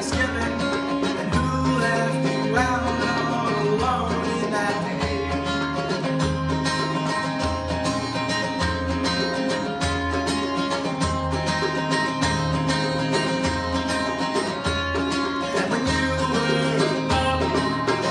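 Live acoustic duo: an acoustic guitar strummed in steady chords over a hand-drum beat of low thumps, with a male voice singing the melody at times.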